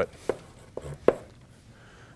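Chalk knocking against a blackboard during writing: a few short, sharp clicks, the loudest about a second in.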